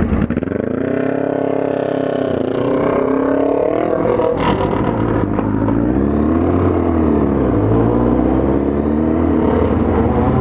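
A 1999 Kawasaki ZX-9R Ninja's inline-four engine accelerating away, the revs climbing and then dropping at an upshift about two and a half seconds in, climbing again and dropping near eight seconds, then rising once more. A sharp click sounds midway.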